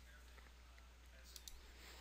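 Near silence with two faint computer mouse clicks about one and a half seconds in.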